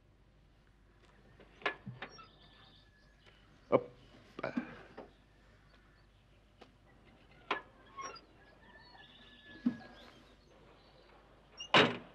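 Scattered knocks and thumps of people climbing into an open-top jeep, ending with a car door shutting, the loudest knock, near the end. Faint bird chirps come in between.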